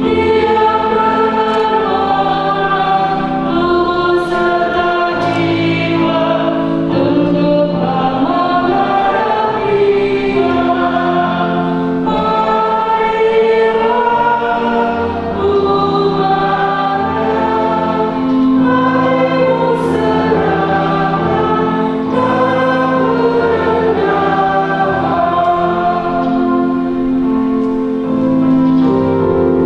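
A choir singing a slow hymn in harmony, with long held notes.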